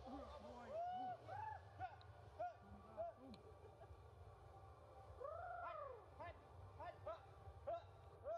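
Macaques calling: a run of short coos that rise and fall in pitch, with one longer, louder coo about five seconds in, over a low steady hum.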